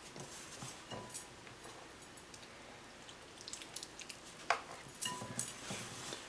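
Hands squeezing and rubbing crumbly flour-and-water dough in a glass mixing bowl: faint rustling and squishing, with a few sharper clicks in the second half.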